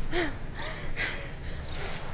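A person gasping: a short breathy gasp just after the start and another about a second in.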